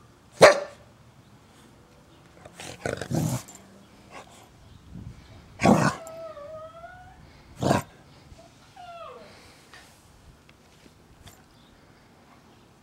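A dog play-barking in short separate barks: one sharp bark about half a second in (the loudest), a quick run of barks around three seconds, and single barks near six and eight seconds. Short wavering whines follow the last two barks.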